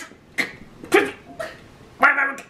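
A man laughing in about three short bursts.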